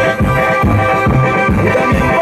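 Live dance music from a band, played loud through stage speakers, with sustained held notes over a steady low beat.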